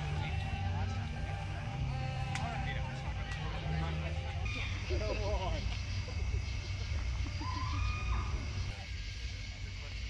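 Electronic ambient soundtrack: a low sustained drone of held notes that shift in pitch, with warbling, voice-like chirps about five seconds in and a short rising glide near eight seconds.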